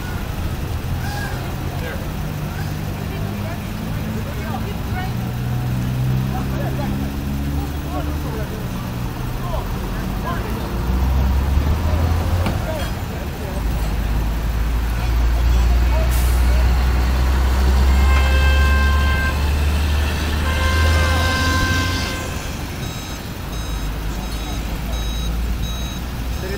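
A heavy tow truck's engine running, getting louder and heavier through the middle. Near the end a reversing alarm starts beeping at a steady rate.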